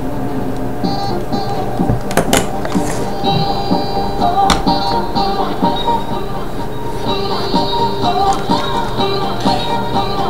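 Music from an MP3 player playing through a budget Serioux 2.1 desktop speaker set with a small subwoofer. A few knocks about two and four and a half seconds in come from the plastic satellite speakers being handled.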